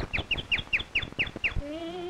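Cartoon daze sound effect: a quick run of about seven short, falling, whistle-like chirps, about four a second, for the stars circling a stunned character's head. Near the end a held, slightly rising note begins.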